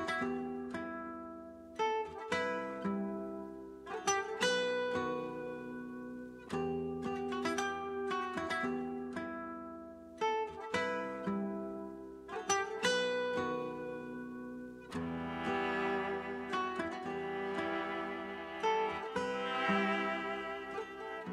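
Spanish guitar playing a dark, plucked melody in repeating phrases, each note ringing and fading, with no drums. About fifteen seconds in, a fuller sustained layer joins under the guitar.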